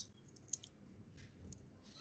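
A quiet pause in a room holding a few short, faint clicks, the sharpest about half a second in.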